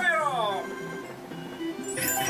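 Merkur 'El Torero' slot machine sounds over the game's music: a sliding electronic tone that rises and then falls in the first half-second, then softer tones, then a brighter win sound that comes in at the end as three 10s pay out.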